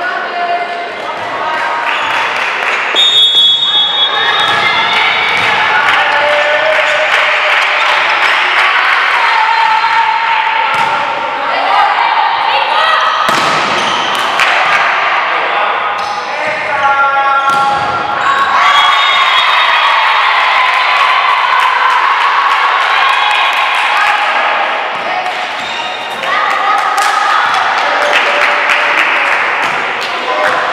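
Volleyball being played in a large gym: voices of players and spectators calling and shouting, cut by a handful of sharp slaps of the ball being hit and bouncing.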